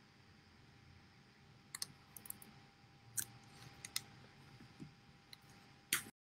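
A few faint, irregular clicks from handling the recording device, the sharpest one right near the end, over a faint steady hum.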